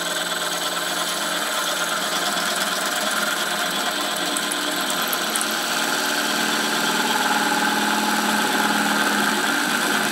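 CNC router spindle running steadily at low speed, turning a roll of aluminium foil against a rotary cutter blade that slits it, a steady hum and whine that grows slowly louder.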